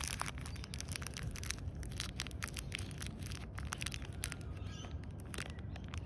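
Small plastic zip-lock seed bag crinkling in the hand, a dense run of sharp little crackles over a low steady rumble.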